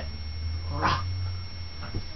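A dog vocalises once briefly about a second in, with a fainter sound near the end, over a steady low hum.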